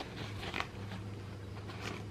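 Faint rustling of stiff cross-stitch fabric being handled and folded, a few brief swishes about half a second in and again near the end, over a steady low hum.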